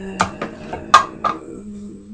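A woman's long, hesitant "euh" held on one pitch, with three sharp clicks over it, the loudest about a second in.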